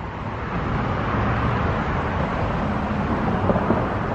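Road traffic: a vehicle's engine and tyre noise builds over about the first second, then holds steady.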